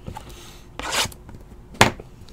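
A sealed trading-card box handled on a tabletop: a short rubbing swish about a second in, then a sharp knock near the end as it is set down.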